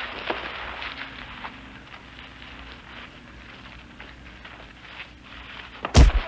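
Scuffling footsteps and light knocks of a fistfight over the steady hiss of an old TV film soundtrack, with one loud thud at the very end as a fighter falls to the ground.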